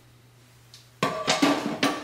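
Metal skillet set down into a stainless-steel sink, clattering with a quick run of knocks and a short metallic ring about a second in.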